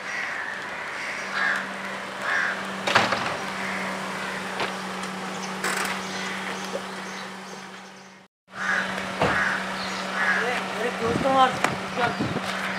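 Outdoor street ambience: crows cawing over a steady low hum, with a few sharp clicks. The sound cuts out completely for a moment about eight seconds in, and raised voices or calls follow near the end.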